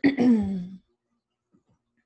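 A woman clears her throat once, briefly, at the start.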